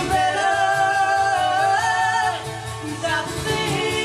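Live acoustic song: a woman's voice holds a long sung note that steps up in pitch and breaks off about halfway through, then starts a new phrase, over two strummed acoustic guitars.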